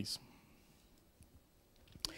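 Pause in a man's speech: the tail of a word, then near silence with a couple of faint small clicks.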